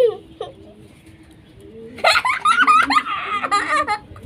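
People laughing while being tickled. A short laugh comes right at the start, then a quieter stretch, then a long run of laughing and giggling from about halfway in.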